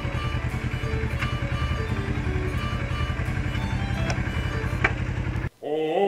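Background music over a motorcycle engine idling with an even low pulse. Near the end everything cuts out suddenly, and a choir starts singing.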